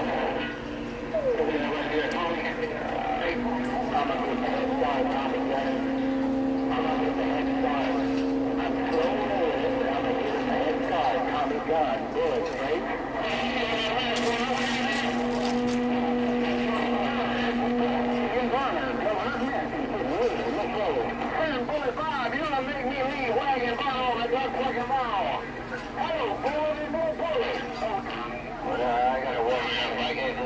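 CB radio transmissions: garbled, overlapping voices heard through a radio speaker, too muddled to make out. Steady humming tones run underneath for several seconds in the first half.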